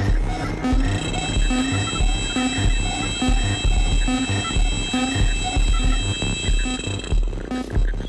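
Electronic music from a live modular synthesizer: a repeating low bass pulse under several steady high-pitched tones, with short pitched blips in between.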